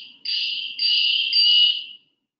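A high-pitched electronic alert tone sounding in three half-second pulses that run almost together, the last the loudest.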